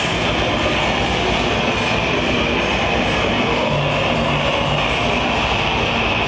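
Death metal band playing live: heavily distorted electric guitars and bass over fast drumming with rapid cymbal hits, a loud, dense and unbroken wall of sound.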